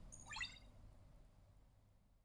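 EMO desktop robot giving a quick run of short electronic chirps, falling in pitch and lasting about half a second, over a faint hum that then fades away.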